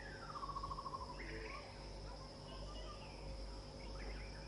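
Steady high-pitched drone of insects, with a bird's short descending trill in the first second.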